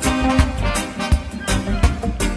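Live roots reggae band playing an instrumental stretch of a song: drums striking a steady beat over heavy bass, with sustained keyboard or horn tones above.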